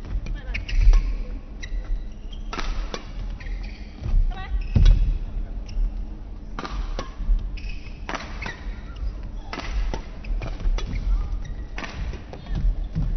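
Badminton doubles rally: rackets strike the shuttlecock with sharp cracks about every second, and shoes squeak and feet thud on the court floor.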